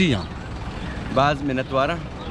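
A man speaking in short phrases with a pause of about a second, over a steady outdoor city background hum.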